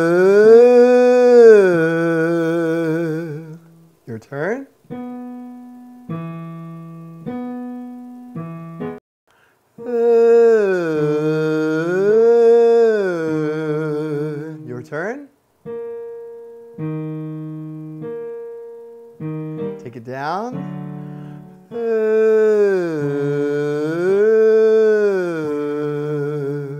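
A man sings a vocal exercise with a pencil held under his tongue, on no particular vowel, in three phrases that glide smoothly up and down in pitch. Between the phrases a piano plays short runs of single, separate notes.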